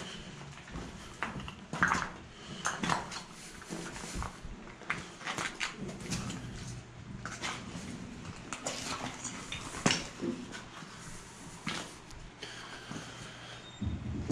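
Footsteps on a loose rock and rubble floor: irregular crunching, with stones clacking underfoot. The sharpest clacks come about two seconds in and again near ten seconds.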